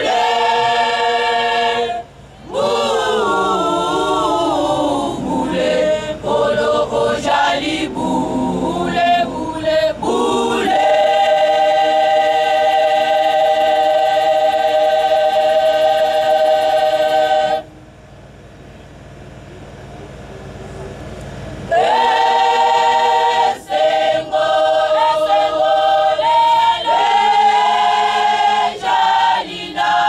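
Women's choir singing, holding one long chord in the middle; the singing breaks off for about four seconds and then starts again.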